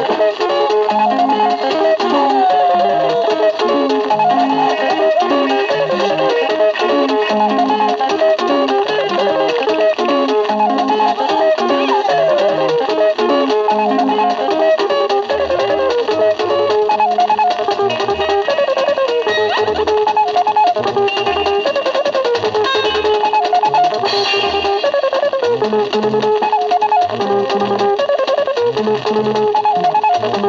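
A 1970s Kenyan Luo band's 45 rpm vinyl single playing on a turntable. An instrumental stretch of guitar-led dance music, with busy interlocking guitar lines that slide between notes over a bass line that comes in more strongly about halfway through.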